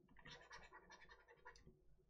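Faint scratching of a stylus on a drawing tablet as short, quick paint strokes are made, several a second.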